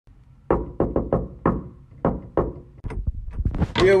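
A series of about eight sharp knocks, roughly three a second, each ringing briefly.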